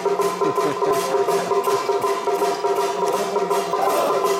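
Traditional temple troupe gong-and-drum percussion struck in a quick, even beat, with the ringing of the gongs held steady under the strokes.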